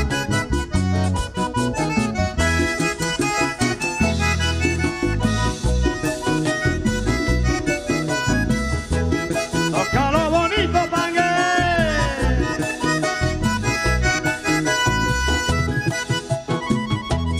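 Vallenato band playing live: a diatonic button accordion leads an instrumental passage over bass and percussion. A long, wavering, falling vocal cry comes in about ten seconds in.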